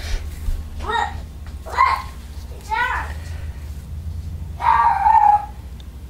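A child's high voice in the background: short calls about one, two and three seconds in, then a longer, louder squeal about five seconds in, over a steady low hum.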